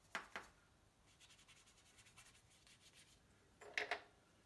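Near silence with two brief faint scrapes of card or brush on watercolour paper, one at the very start and one near the end.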